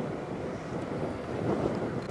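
Wind buffeting the microphone over a low, steady rumble.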